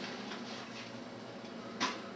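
Low, steady room noise with one short click near the end.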